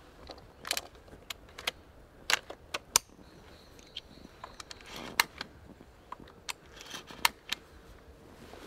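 Cartridges being pushed one by one into the magazine of a Browning Maxus semi-automatic shotgun: a run of irregular sharp metallic clicks and snaps, the loudest a little over two seconds in and at three seconds.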